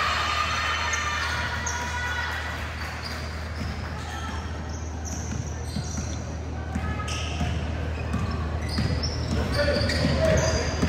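A basketball bouncing on a hardwood gym floor during play, with short high sneaker squeaks and players' voices and shouts around it.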